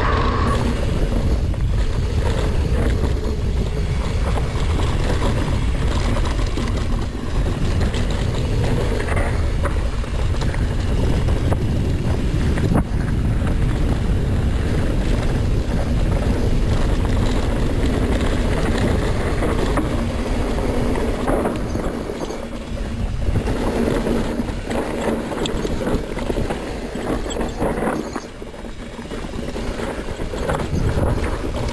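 Wind buffeting the microphone along with the rattle and rumble of a mountain bike's tyres and frame at speed on a rough dirt descent, with occasional sharp knocks.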